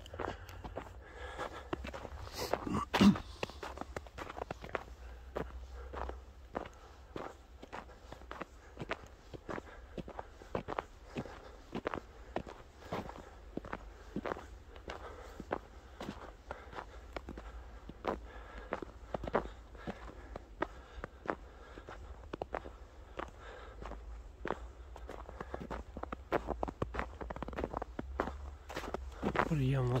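Footsteps on a snow-covered path at a steady walking pace, with a steady low rumble underneath and one sharper knock about three seconds in.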